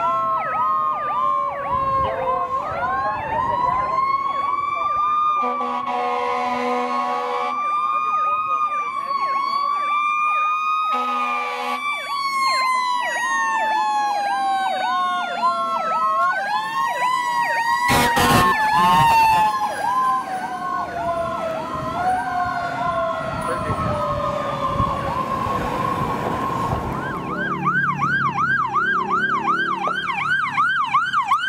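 Fire engine sounding a fast electronic yelp siren together with a second siren tone that winds up and then slowly winds down, like a mechanical siren coasting, with two air horn blasts about six and eleven seconds in. Near the end a different, faster and higher warbling siren takes over as a second emergency vehicle approaches.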